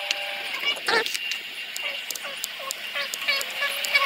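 A woman's faint voice counting her heel-to-toe steps aloud, with scattered light ticks and a thin steady high tone behind it.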